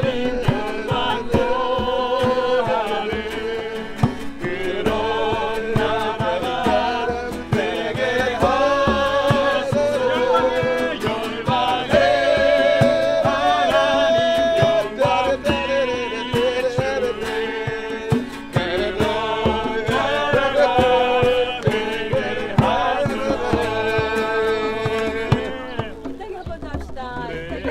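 A small group singing a worship song, accompanied by two strummed acoustic guitars and a djembe struck by hand.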